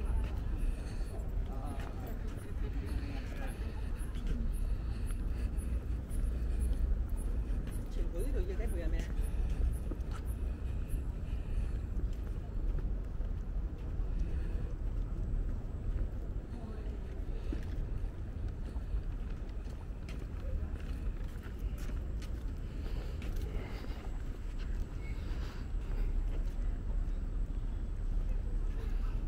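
Outdoor city street ambience at walking pace: a steady low rumble of traffic, with passers-by talking indistinctly near the start and again about eight seconds in.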